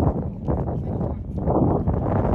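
Wind buffeting the phone's microphone, a steady rumble with uneven gusts about every half second.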